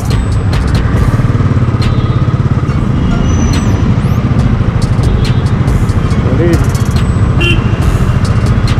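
Royal Enfield motorcycle's single-cylinder engine running at low speed in slow city traffic, a fast, even pulsing beat.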